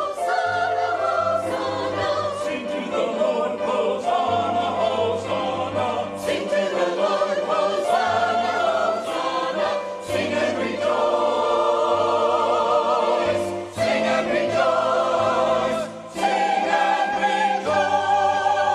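Mixed church choir singing an anthem in parts, the phrases separated by short breaths.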